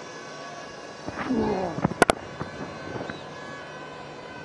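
Cricket ground ambience from the broadcast field microphones: a steady background hum, a short voice calling out just after a second in, and two sharp clicks close together about two seconds in.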